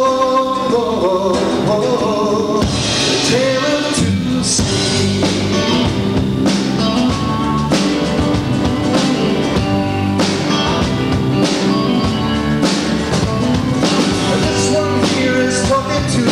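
Live folk-rock band: a held sung 'oh' over acoustic guitar gives way, about three seconds in, to an instrumental break with acoustic and electric guitars, bass, keyboards and a drum kit keeping a steady beat.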